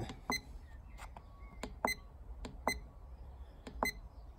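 Myenergi zappi EV charger's keypad beeping as its buttons are pressed to step through the settings menu: about four short, pitched beeps, with fainter key clicks between them.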